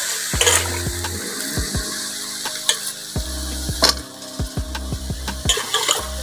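A steel spatula stirring and scraping raw banana pieces frying in oil in a metal wok. A steady sizzle runs under many sharp, irregular clicks as the spatula knocks the pan.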